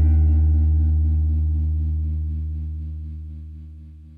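The song's last chord ringing out and fading steadily, a deep bass note under guitar tones, as the track ends.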